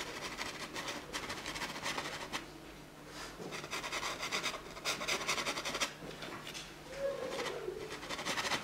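A paintbrush scrubbing oil paint across a stretched canvas in quick, rasping back-and-forth strokes, coming in three spells with short pauses between.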